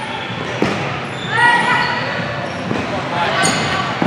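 Futsal ball kicked and bouncing on a gym's hardwood court, with a sharp kick about half a second in, and players' voices calling out in the echoing hall.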